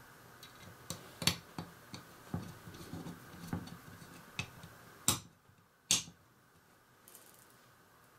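Small clicks and ticks of a precision screwdriver turning tiny screws into a plastic model part, irregular over the first four seconds or so, then two sharper clicks about five and six seconds in.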